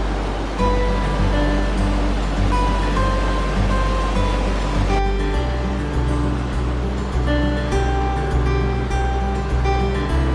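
Background music: an instrumental track with a steady pulse, held melody notes and a low bass line.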